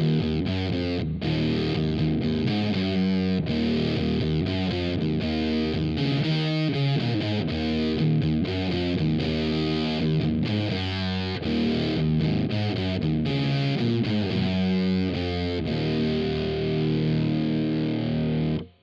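Electric guitar played through a Boss FZ-2 Hyper Fuzz pedal in its Fuzz 2 mode: heavily distorted chords strummed continuously, changing every half second or so, at a steady level.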